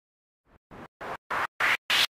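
DJ remix intro effect: after a moment of silence, a run of short bursts of hiss, about three a second, each louder than the last, building up to the track's start.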